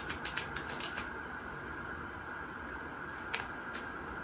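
A deck of tarot cards being shuffled by hand: a fast run of card clicks, about eight a second, that stops about a second in. Two single card clicks come near the end.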